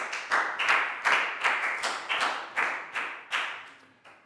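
A class clapping a round of applause together in a steady rhythm, about three claps a second, dying away near the end.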